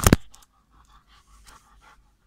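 Golden retriever panting quickly and faintly, several short breaths a second. A loud knock or two comes right at the start.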